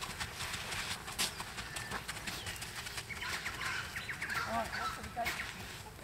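Outdoor ambience with a horse's muffled hoofbeats on an arena's sand surface, and birds calling in the second half.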